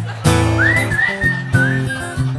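Acoustic guitar strummed in the song's accompaniment, with a whistled line over it that glides up about half a second in and then drifts slightly lower.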